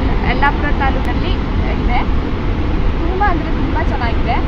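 A woman's voice talking in short phrases over a steady low rumble.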